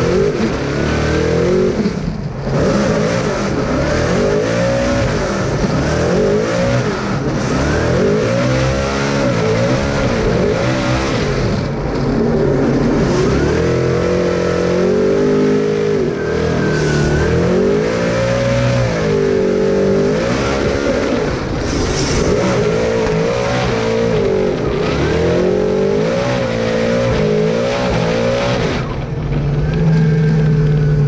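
Ford Mustang RTR Formula Drift car's V8 engine, heard from inside the cockpit, revving up and down again and again as the car is driven sideways through a drift run. There is a short dip in the revs about two seconds in, and the engine settles to a steadier note near the end.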